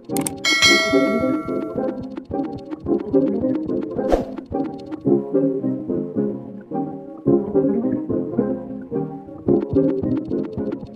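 Background music with a steady beat. Just after the start comes a bright bell-like ding that rings and fades over about a second and a half, the chime of an on-screen subscribe-button animation. A short sweep follows about four seconds in.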